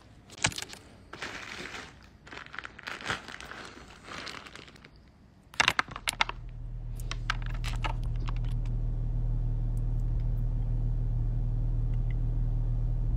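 Bursts of rustling handling noise and sharp clicks for the first half. Then, from about halfway, a steady low hum fades in and holds inside a car's cabin.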